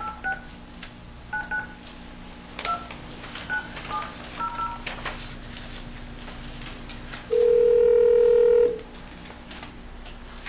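Telephone speakerphone being dialed: a string of short touch-tone keypad beeps over about five seconds, then one ringback tone of about a second and a half as the called line rings.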